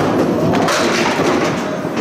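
Candlepin bowling ball rolling down a wooden lane with a loud, steady rumble.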